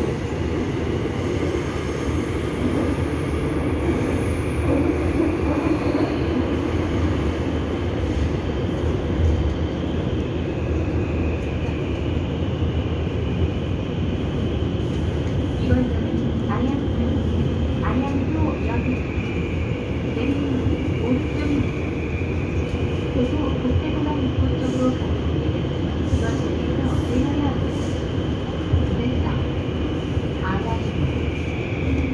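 Daegu Metro Line 1 subway car running between stations, heard from inside the car: a steady rumble of wheels on rail with a high whine that wavers in pitch, and a few clicks partway through.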